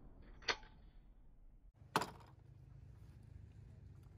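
Sharp metallic clicks from a shotgun being handled: a small click about half a second in, then a louder, sharper crack with a brief ring at about two seconds.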